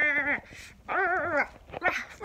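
Pet dog whining while being stroked: one drawn-out whine ends just after the start, and a second, wavering whine follows about a second in.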